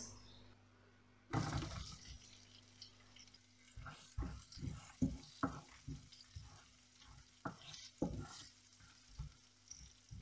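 Sliced onions going into hot oil in a non-stick frying pan, sizzling in a short burst about a second in, then a wooden spoon stirring them with a run of light, separate knocks and scrapes against the pan.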